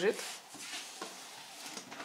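Faint rustling with a light click about a second in, as a child rummages inside a wooden cupboard.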